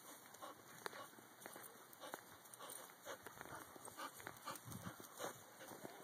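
Faint sounds of dogs playing: scattered short scuffs and rustles of dogs moving over dry leaves and gravel.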